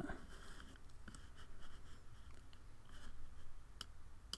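Faint scratchy sliding of a computer pointing device being moved across the desk to drag a curve point, with a sharp click near the end.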